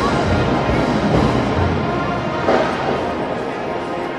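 Marching band playing, brass and drums heard from the stadium stands; the low drum part drops out about halfway through.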